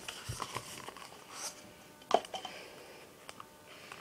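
Nested disposable cups being worked apart by hand, with light rustling and scraping. About two seconds in, a cup is set down on the table with a sharp tap, followed by a few faint ticks.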